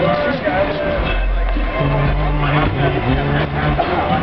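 Crowd voices chattering over music played through a sound system, with held bass notes changing about once a second.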